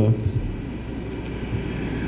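A brief pause in a man's talk: a steady low rumble of room noise, with the end of his last word fading out at the start.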